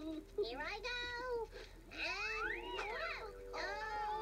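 A high-pitched, childlike character voice making wordless exclamations whose pitch swoops up and down, with one long rise and fall a little past the middle.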